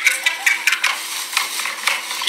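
Recorded outdoor commotion played back through a phone's small speaker: thin and crackly, with no bass and a run of quick clicks and scrapes.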